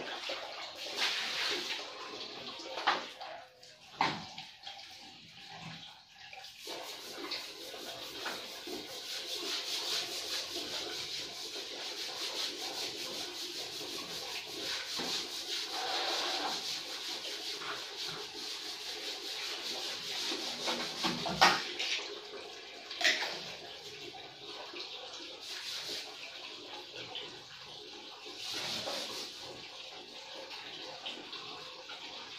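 Water running and splashing on the tiled floor of a shower stall as it is cleaned by hand, with a few sharp knocks and clatters of objects in the first few seconds and again about two-thirds of the way through.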